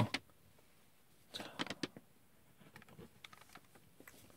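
A few faint small clicks from fingers handling a plastic toy flip phone, the Bandai DX Climax Phone, in the second half; otherwise mostly quiet.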